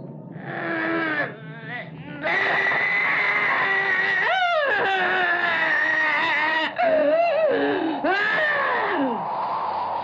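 Werewolf howls: a voice wailing in long, bending glides, several howls overlapping, with a sharp rising and falling sweep about four seconds in and more falling howls near the end.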